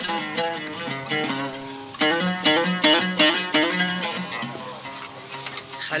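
Music: a plucked string instrument playing a melody of separate, quickly struck notes, growing louder about two seconds in, as the instrumental lead-in to a sung Arabic song.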